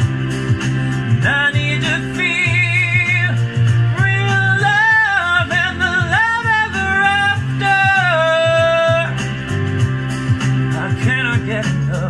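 Male voice singing sustained wordless notes with vibrato over a backing track of steady chords and a regular beat. The vocal drops out about nine seconds in and returns briefly near the end.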